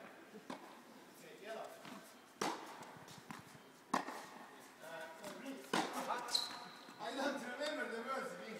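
Tennis balls struck with rackets during a practice rally in a large indoor hall: four sharp thwacks about one and a half to two seconds apart, the third the loudest, with low voices between them.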